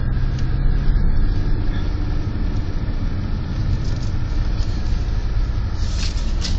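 Car engine running steadily at low speed with road rumble, heard from inside the cabin.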